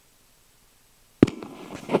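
Handling noise on a clip-on microphone: near silence, then about a second in a sudden loud thump, followed by rubbing and small knocks as the microphone is clipped on and handled.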